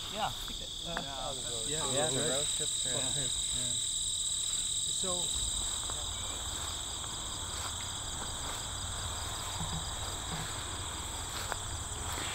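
Crickets trilling in a steady, continuous high-pitched chorus, with faint talk during the first five seconds.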